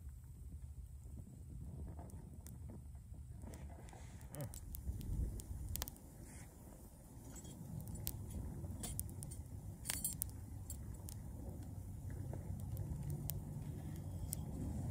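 Handling sounds at a small folding wood-burning camp stove: scattered clicks and crackles of sticks and light metal clinks from the steel cup and a metal tool, over a steady low rumble.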